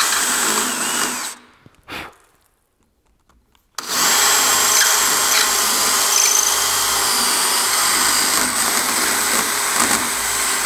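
DeWalt cordless drill spinning a half-inch Forstner bit inside a 9/16-inch hole in a wooden post, hollowing out the inside of the hole so a baluster rod can go in at an angle. It runs, stops a little over a second in with one short blip, then starts again at about four seconds and runs steadily.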